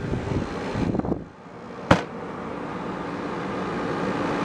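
Portable air conditioner running with a steady humming whir, making what the owner calls weird noises, cause unknown to him. A single sharp knock about two seconds in.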